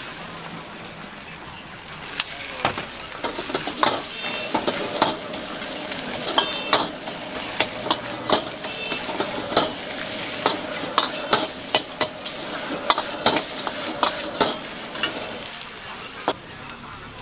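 Vegetables sizzling in a hot wok as a metal ladle stirs and tosses them, with frequent sharp clanks and scrapes of the ladle against the wok starting about two seconds in.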